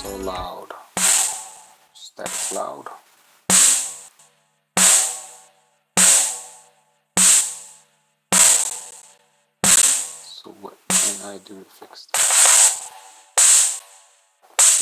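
A single sampled drum hit playing back on its own in a mix, struck about once every 1.2 seconds, each hit sudden and quickly decaying. Its sound is all on the high end.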